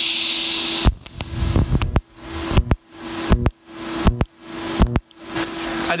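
TIG welding arc tacking thin bicycle tubing with filler rod: a hiss of about a second, then a run of about six short arcs, each swelling and then cut off with a click, over a steady hum.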